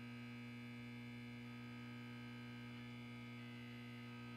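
A faint, steady electrical hum at one unchanging pitch with many overtones.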